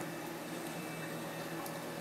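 Steady hum and water hiss from a reef aquarium's pumps and water circulation.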